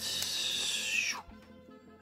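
Pokémon trading cards sliding against one another as a few are moved from the back of the stack to the front: a short, airy rustle lasting about a second, then quiet.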